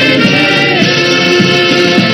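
A choir singing with band accompaniment, loud and continuous.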